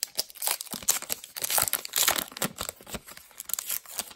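Foil-and-paper wrapper of a 2019 Topps Heritage High Number baseball card pack being torn open and crinkled by hand: a run of irregular crackles and rips.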